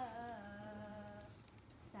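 A woman singing unaccompanied, holding one long note that dips slightly in pitch and fades out about a second in, then starting the next phrase near the end.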